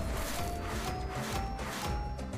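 Online slot game audio: looping background music, with a string of short notes about two a second, each a step higher in pitch, as banana cash symbols land on the reels.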